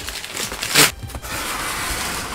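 A large cardboard box being opened by hand: cardboard flaps pulled apart and plastic packing rustling, with one sharp rip or scrape a little under a second in.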